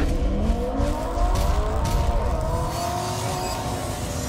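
Car engine revving up, its pitch rising, then held steady at high revs, easing off slightly near the end.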